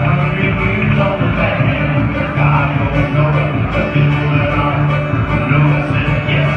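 Live acoustic string band playing: an upright bass plucks a steady run of low notes, about two a second, under strummed acoustic guitar.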